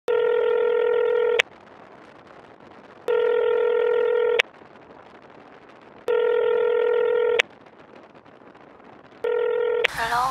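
Telephone ringback tone: a steady tone about a second and a half long, repeating every three seconds, three full rings and a fourth cut short near the end as the call is answered.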